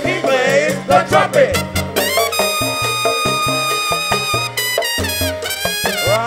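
Live salsa band with a trumpet solo over bass and percussion: after a few quick phrases, the trumpet holds one long high note for over two seconds, then drops into fast falling runs near the end.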